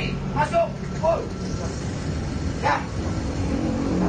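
Inside a Trans Metro Pasundan city bus: the bus's steady low engine drone, with a few short, loud bursts of people's voices about half a second, one second and nearly three seconds in.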